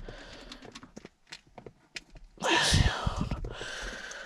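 Faint small clicks of hands handling parts. About two and a half seconds in comes a louder burst of rustling noise with low thumps lasting about a second, then a softer hiss.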